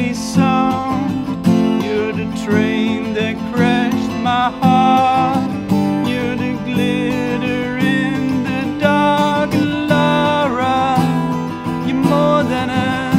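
Live acoustic cover of a pop ballad: a steadily strummed acoustic guitar carrying chords, with a wavering, gliding melody line over it.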